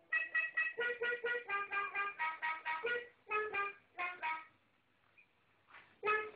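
A toy musical instrument played in a quick run of short, pitched notes, about four or five a second, stopping about four and a half seconds in.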